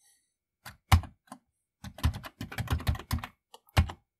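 Typing on a Commodore 64 keyboard: a few separate key presses in the first second or so, then a quick run of keystrokes from about two seconds in, and one more firm press near the end.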